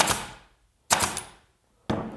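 Staple gun firing three times, about a second apart, each a sharp shot with a short fading tail, as it staples the end of a twisted fur strip to a wooden board.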